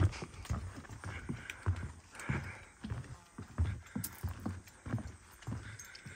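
Footsteps on a wooden boardwalk: a steady walking rhythm of hollow knocks on the planks, about two a second.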